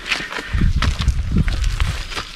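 Footsteps on a dirt path as a group walks, with wind buffeting the microphone in a low, uneven rumble from about half a second in.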